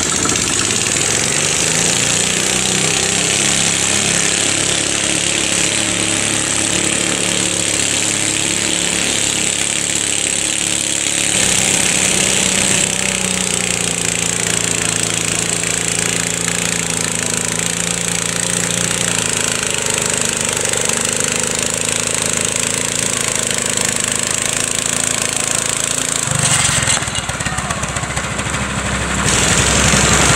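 Small garden tractor engine running steadily under load while pulling a weight-transfer sled, its pitch shifting about a third of the way in and again near the end.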